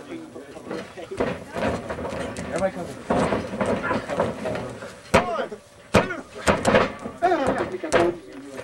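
Bodies slapping and thudding onto a tarp-covered wrestling ring mat several times in the second half, the sharpest hits about five and six seconds in, under indistinct voices talking and shouting.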